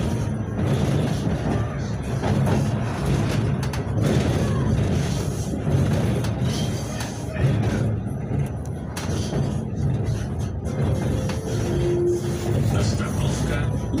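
KTM-28 (71-628-01) tram running along the track, heard from inside the passenger saloon: a steady low rumble of wheels on rails and the running gear, rising and falling slightly in loudness.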